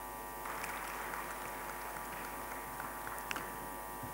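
Low, steady electrical hum, with faint room noise and a couple of soft clicks about three seconds in.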